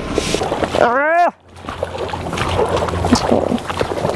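Garbage truck engine running in a slushy street, with a brief call from a voice about a second in. After that comes the wet sloshing of feet and dog paws through slush and standing water, over low traffic rumble.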